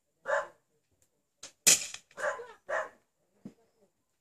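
German shepherd barking: one short bark near the start, then three in quick succession around the middle.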